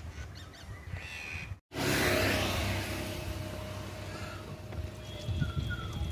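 Birds calling outdoors. The sound drops out completely for a moment about one and a half seconds in and comes back suddenly louder.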